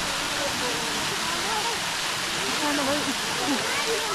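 Outdoor fountain spraying: a steady rush of water jets falling back into the basin.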